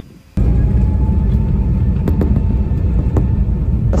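Embraer E195-E2 jet on its takeoff roll, heard inside the cockpit: a loud, steady low rumble of the engines at takeoff thrust and the wheels on the runway. It starts abruptly about a third of a second in, with a faint steady whine above it and a few sharp knocks in the middle.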